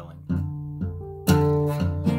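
Acoustic guitar, capoed at the first fret, playing an F-sharp minor 7 shape with the low sixth string let rattle: a few soft plucks, then a much louder strummed chord about halfway through and another near the end.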